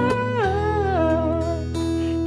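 A male singer draws out a word in a wordless-sounding vocal run that slides down in pitch over an acoustic guitar backing, then settles on a lower held note near the end.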